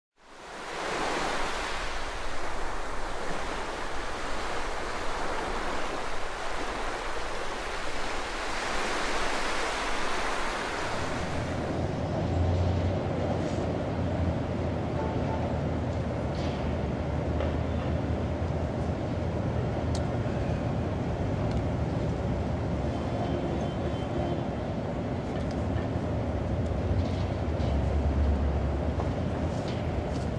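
Steady rushing noise like wind for about the first ten seconds, then a lower rumbling drone with a few faint clicks.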